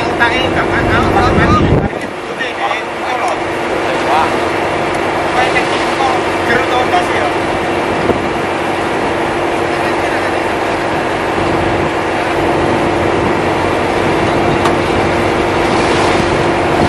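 Steady hum of a boat's engine holding one constant tone, with voices talking in the background. A heavy low rumble at the start cuts off suddenly about two seconds in.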